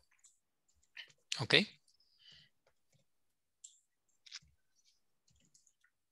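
A handful of faint, brief computer mouse clicks spaced over a mostly quiet few seconds, with one short spoken word near the start.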